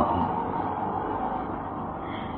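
A pause in a man's speech, filled by steady background hiss with a faint low hum. The tail of his last word is heard at the very start.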